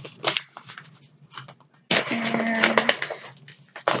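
Crinkling and crackling of blind bag packets being handled and squeezed, in short bursts and then a denser stretch about two seconds in, with a closed-mouth hum over the crinkling.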